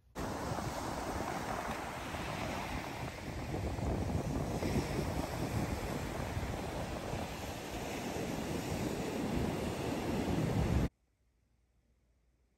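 Ocean surf breaking and washing up a sandy beach, with wind buffeting the microphone. It cuts off suddenly about a second before the end.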